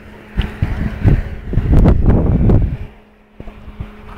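Wind buffeting a phone microphone in irregular low gusts, loudest through the middle and dying down near the end, over a faint steady hum.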